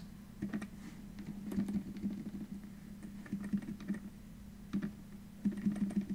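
Faint, irregular clicking like typing on a computer keyboard, over a steady low hum.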